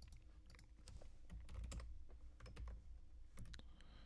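Faint computer keyboard typing: scattered single keystrokes, with a quick run of several keys about three and a half seconds in.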